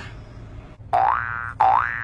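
A cartoon 'boing' sound effect played twice in quick succession, about a second in: each a pitched tone that glides upward.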